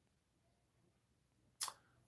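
Near silence of a small room, broken about one and a half seconds in by one short click.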